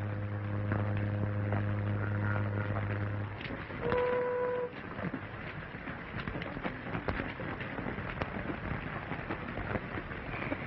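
A ship's horn sounding one long, low, steady blast for about three seconds, then a short, higher-pitched whistle blast about four seconds in. After that comes a steady noisy background with scattered clicks and knocks.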